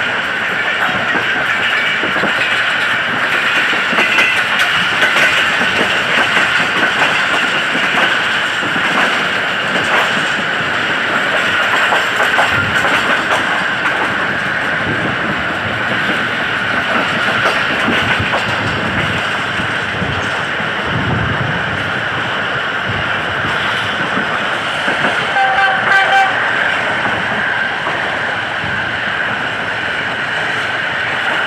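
Steady running noise of a passenger coach at speed, heard from an open coach window: rumble and rattle, with scattered clicks of the wheels over the rails. About three-quarters of the way through, a short horn note sounds from the diesel-electric locomotive.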